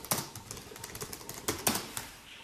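Typing on a keyboard: irregular, sharp key clicks, the loudest two near the end.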